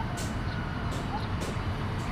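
Steady background rumble with a few faint short chirps and light clicks.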